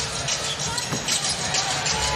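A basketball bouncing on a hardwood court over steady arena crowd noise.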